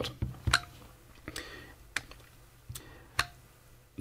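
Trigger of a Kaiweets KTI-W02 thermal imager being pressed repeatedly, about five sharp plastic clicks spaced half a second to a second apart, switching its LED floodlight and laser pointer on and off. The lights engage only on maybe every other press.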